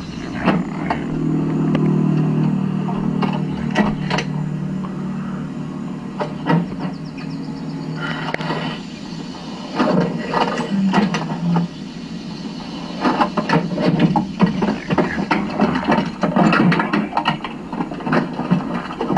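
A vehicle engine starting and running with a steady low hum, followed in the second half by many short knocks and rattles.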